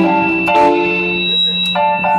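Live band music led by an electronic keyboard playing held chords over a steady low bass note, the chords changing about half a second in and again near the end.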